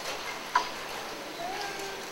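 A single sharp click about half a second in, over quiet room tone, as the projected slide is advanced.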